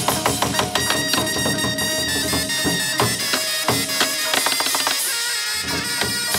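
Chầu văn ritual ensemble playing an instrumental passage: a fast, even run of percussion strikes under a sustained melody line, with no singing.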